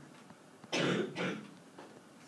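A person clears their throat with two short coughs, a longer one a little under a second in and a shorter one right after.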